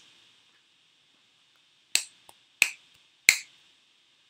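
Three finger snaps about two-thirds of a second apart, each sharper and louder than the one before.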